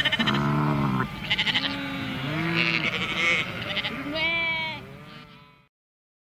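Cartoon sheep bleating: about half a dozen wavering calls one after another, some overlapping, each rising and then falling in pitch. The bleating cuts off abruptly near the end.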